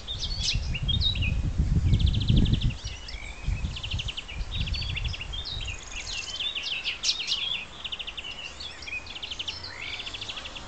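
Common nightingale singing: varied phrases of fast, rattling repeated notes alternating with short whistles, one phrase after another. A low rumble on the microphone runs under the first three seconds.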